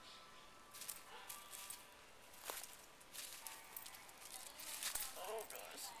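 Faint rustling and crackling of dry leaves, with scattered light clicks, as small dogs scuffle and play on leaf litter and rocks.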